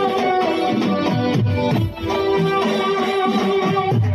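Live garba band playing an instrumental passage: a held melody line over a repeating drum pattern, with no singing.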